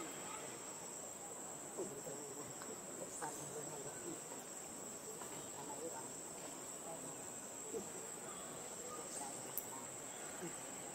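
A steady, high-pitched insect drone, as from crickets or cicadas, with faint short squeaks and chirps scattered through it.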